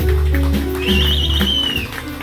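Live jazz band playing: piano and keyboard holding sustained low notes, with a high warbling, whistle-like tone coming in about a second in and trailing slightly downward for about a second.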